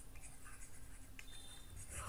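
Faint sound of a stylus writing on a tablet surface as words are handwritten.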